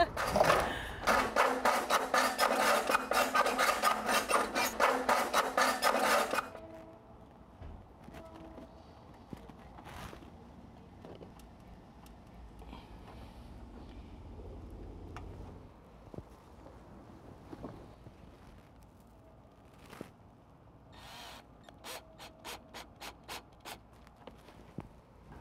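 Hacksaw cutting through a downspout in rapid back-and-forth strokes, stopping abruptly about six seconds in. Later a cordless drill driving screws is heard faintly, with a short run of quick ticks near the end.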